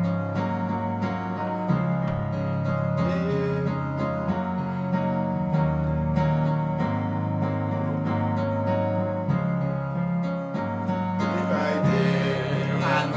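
Instrumental hymn introduction: keyboard and guitar playing held chords over a bass line that moves every second or two.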